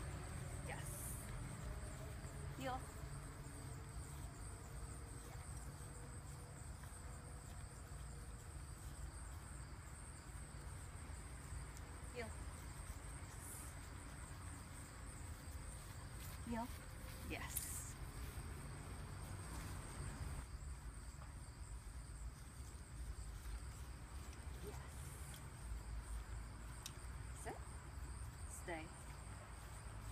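Steady high insect drone over a low rumble of outdoor background noise.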